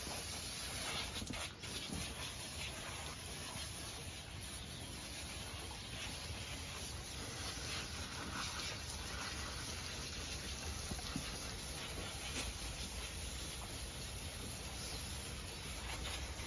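Water from a garden hose spray nozzle running steadily, spraying onto a golden retriever's wet coat and the deck.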